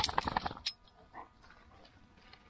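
A quick run of light clinks and clicks for about the first half second, stopping suddenly, then quiet with a few faint ticks.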